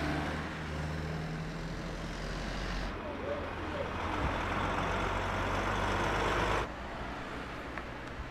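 Stationary heavy lorries with their diesel engines idling: a steady low drone under a haze of engine noise. The sound changes abruptly about three seconds in and again near seven seconds.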